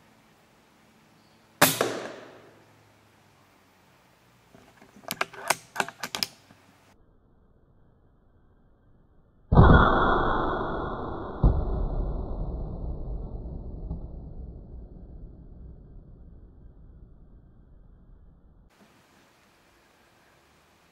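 Air rifle shot: a sharp crack about one and a half seconds in, then a quick run of clicks and knocks a few seconds later. Near the middle a loud sudden hit, with a second knock two seconds after it, rings on and fades slowly over several seconds.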